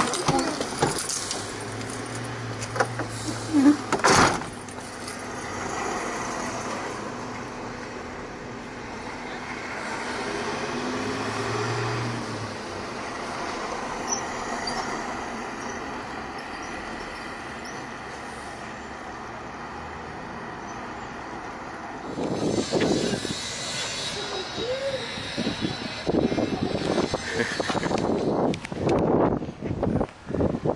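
Outdoor street traffic: a steady background of vehicle noise, with low engine hums swelling and fading twice as vehicles pass. Louder rough rumbling of microphone handling in the last several seconds.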